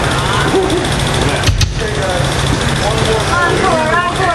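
Voices and chatter from people around a live band stage between songs, over a steady low hum, with a single sharp thump about a second and a half in.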